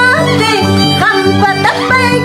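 A woman singing a Peruvian huayno in a high voice with sliding, ornamented phrases, over an Andean harp keeping a steady, evenly repeating bass pulse.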